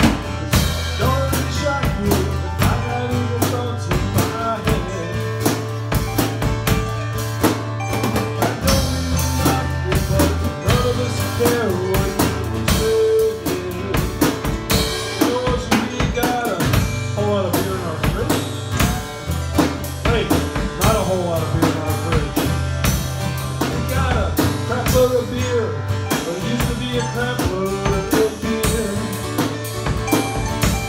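Live band playing a song: a drum kit with kick, snare and rimshots keeping a steady beat under two strummed and picked acoustic guitars.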